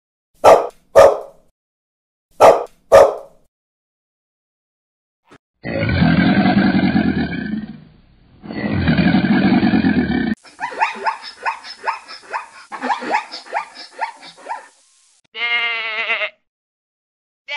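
A string of separate animal calls. First a dog barks four times, in two quick pairs. Then a crocodile gives two long, low calls, a string of many short calls from an unseen animal follows, and near the end a sheep bleats.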